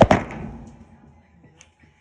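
A couple of loud knocks right at the start, dying away quickly into faint rustling and ticks.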